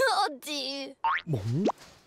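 Cartoon sound effect about a second in: a quick rising swish, then a springy boing-like tone that drops low and shoots sharply back up.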